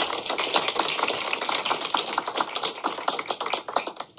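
Audience applauding, a dense patter of many hand claps that thins out near the end.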